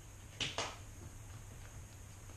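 Two short, sharp clicks about a fifth of a second apart, a little under half a second in, over a faint low room hum.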